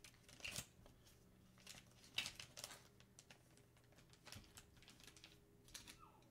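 Near silence, with faint scattered rustles and light clicks of plastic bags being handled, over a faint steady hum.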